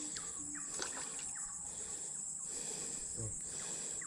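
Steady, high-pitched chorus of crickets or similar insects, with faint short falling chirps now and then.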